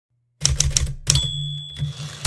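Typewriter keys clacking in a quick run, then a bell ding about a second in, followed by a couple more key strikes.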